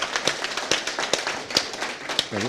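Audience applauding: many people clapping at once in a quick, irregular patter.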